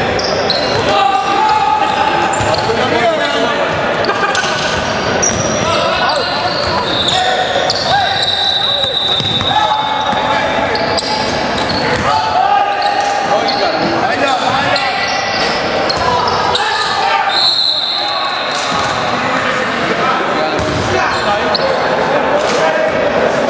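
Game play in a basketball gym: a basketball bouncing and sneakers giving short high-pitched squeaks on the hardwood floor, with indistinct shouts from the players, all echoing in the large hall.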